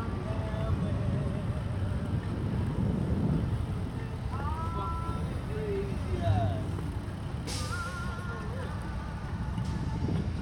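Road traffic at an intersection: cars and a pickup truck idling and pulling through, a steady low rumble. A brief hiss comes about seven and a half seconds in.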